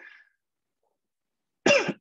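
A man clears his throat with a short cough near the end, after a pause in his talk.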